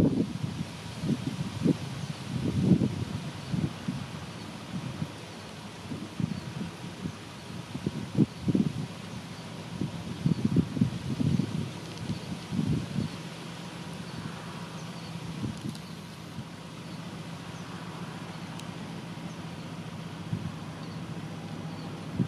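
Wind buffeting the microphone in gusts over the distant low, steady drone of an M62 'Szergej' diesel locomotive's two-stroke V12 engine as it slowly shunts a train of tank wagons. The gusts die down about halfway through, leaving the engine's drone clearer.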